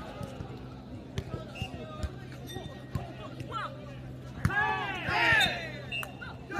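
Jokgu ball being kicked and bouncing on the court during a rally: several sharp knocks, spaced irregularly. About four and a half seconds in, players shout loudly, the loudest sound.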